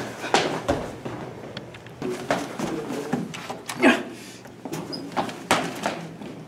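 A string of irregular knocks and thuds from a person hurrying about a room and out through a doorway.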